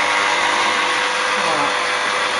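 Hurom slow juicer running with a steady motor whir.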